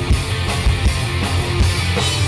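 Punk rock band playing live: electric guitars, bass and drum kit in a passage without vocals, with steady drum hits.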